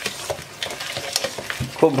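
A metal spoon stirring and scraping a dry powdered herbal mixture with sugar around a stainless steel bowl, in a run of irregular gritty scrapes. A voice starts just before the end.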